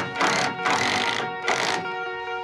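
Cordless drill driving a screw into old timber in three short bursts, over background music.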